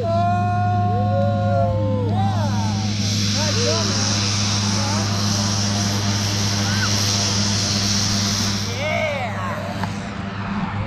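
Steady low drone of an aircraft engine, with people calling out over it and a broad rushing hiss from about two to nine seconds in.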